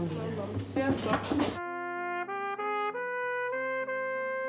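Voices at a dinner table cut off after about a second and a half. A trumpet then plays a slow legato melody, stepping through several short notes before settling on a long held note.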